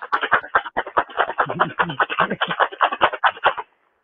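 Ice rattling hard and fast in a metal cocktail shaker tin during a vigorous shake, a dense, uneven clatter that stops about three and a half seconds in. This is the hard shake that chills, dilutes and aerates a citrus cocktail.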